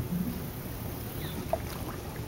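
A largemouth bass released over the side of a boat drops back into the water with one small splash about one and a half seconds in, over a low, steady outdoor background.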